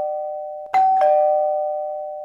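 Two-tone doorbell chime ringing ding-dong, a higher note then a lower one, each left to ring and fade; an earlier chime is dying away as a second one sounds about three-quarters of a second in. It signals a visitor at the door.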